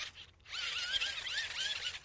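Hand-cranked generator being turned to power a toy electric train, its small motor and gears giving a high whine. The whine rises and falls about four times a second with the cranking, starting about half a second in.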